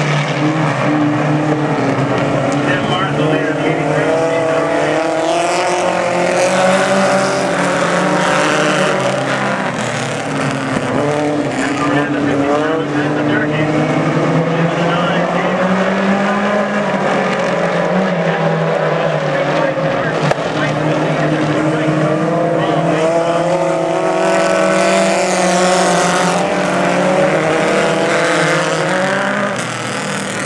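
A pack of four-cylinder Fast Fours stock cars racing on the oval. Several engines are heard at once, their pitches rising and falling in overlapping waves as the cars lap.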